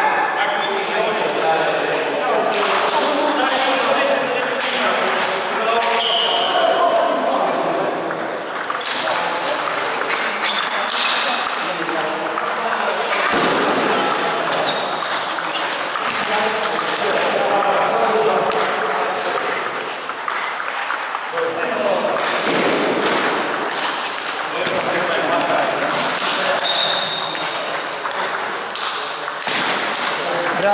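Table tennis balls clicking off the table and bats in rallies, several tables at once, over a steady background of people's voices.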